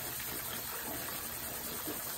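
Steady, even rush of flowing river water.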